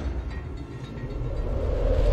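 Sound effect of an animated logo intro: a deep rumble that dips, then swells steadily louder as it builds toward the logo reveal.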